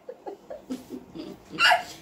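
A woman laughing hard in short, gasping pulses, with a louder burst of laughter near the end.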